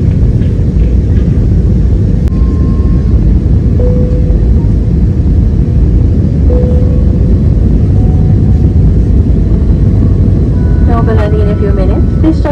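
Passenger airliner heard from inside the cabin: a loud, steady low rumble of engines and airflow. A voice begins near the end.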